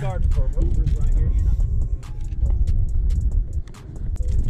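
Fishing rods and baitcasting reels clicking and knocking against each other as they are handled on a boat deck, over a loud, uneven low rumble; a short laugh at the start.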